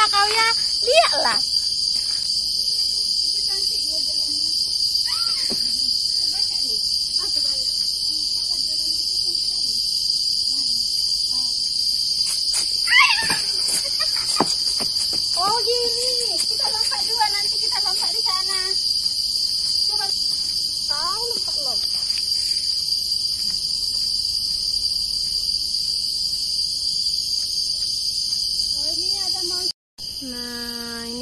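A steady, high-pitched chorus of tropical forest insects that runs without a break, with faint voices heard now and then.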